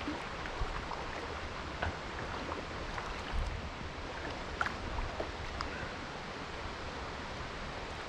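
Steady rush of river water, an even hiss, with a few faint clicks scattered through.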